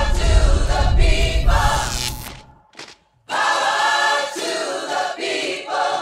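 Choir singing sustained chords over a deep bass rumble, fading out about two seconds in; after a short silence a second choral phrase follows without the bass.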